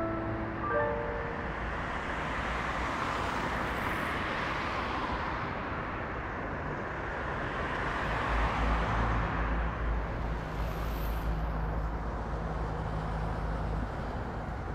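City street traffic ambience: a steady wash of road noise with a low rumble that swells and fades slowly as vehicles pass. The last few notes of soft music end about a second in.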